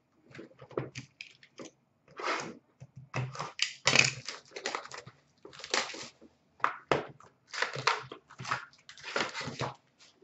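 Plastic trading-card pack wrappers crinkling and tearing open, with cards being handled and shuffled, in irregular bursts of rustling.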